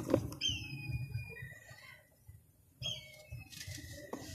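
Dry sand and cement crumbling through bare hands, with a crunch right at the start and soft grainy trickling after. A bird calls twice over it, each call a high whistle that drops quickly and then holds.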